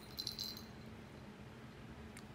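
Metal ID tag on a kitten's collar jingling briefly as the kitten moves its head: a short cluster of light, ringing clinks starting about a quarter-second in and lasting about half a second.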